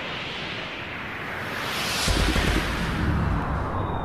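Sound-design whoosh for an animated logo intro, a rushing noise that swells up to about two seconds in, where a deep rumble comes in suddenly and carries on under it.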